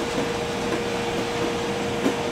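A steady machine hum with one constant tone, running evenly throughout.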